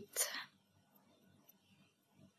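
A brief soft, breathy voice sound in the first half-second, then near silence: room tone.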